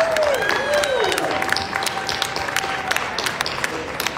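Audience applauding with many hands clapping, and a few voices calling out in the first second or so. The applause eases slightly toward the end.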